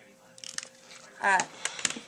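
A few soft clicks from a long-neck butane utility lighter as its flame is held to a candle wick and then drawn away, followed by a short spoken 'uh', which is the loudest sound.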